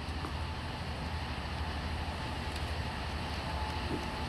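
Steady outdoor background rumble and hiss with no distinct events.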